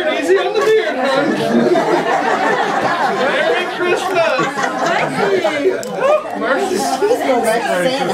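Several people talking over one another: indistinct chatter from a roomful of people, with no single voice standing out.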